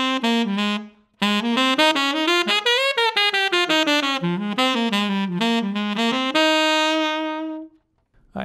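Solo tenor saxophone playing a swung jazz line of quick legato notes, tongued in the 'doo-den doo-dah' jazz articulation style, with a short breath about a second in. The line ends on a long held note that stops just before the end.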